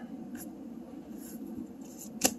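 Faint scratching of a marker on paper over quiet room tone, with a small click near the start.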